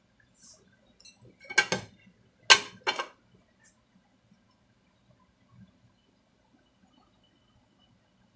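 A quick run of short clatters of kitchenware, metal or glass knocking together, between about one and a half and three seconds in. A faint low hum sits under them.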